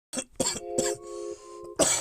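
A man coughs about four times, the loudest cough near the end, over a held chord from the beat.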